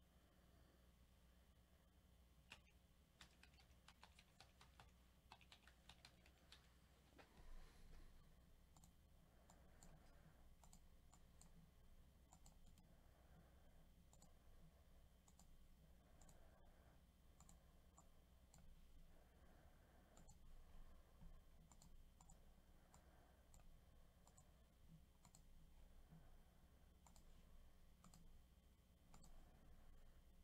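Faint, scattered computer keyboard keystrokes and mouse clicks over near silence.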